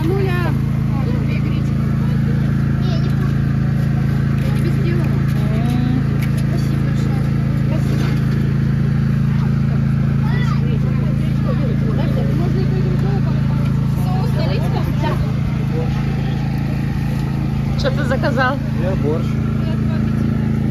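A steady low drone of a running motor, with faint voices over it.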